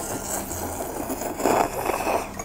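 A person slurping noodles from a bowl held to the mouth: a continuous noisy sucking that swells about a second and a half in.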